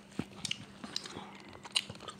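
Irregular small crackles and clicks of a foil-lined Hi-Chew candy wrapper being handled close to the microphone, the sharpest one near the end, over a faint steady hum.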